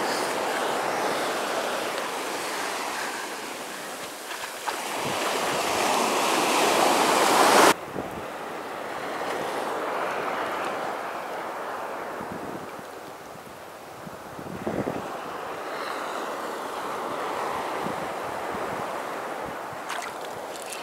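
Ocean surf washing in the shallows, building to its loudest and cutting off sharply about eight seconds in, then softer swells of lapping water with wind on the microphone.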